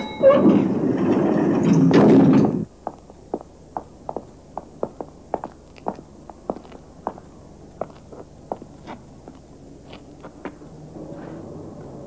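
A loud rushing noise for about two and a half seconds that cuts off suddenly, then footsteps, sharp separate steps about three a second, going on for most of the rest.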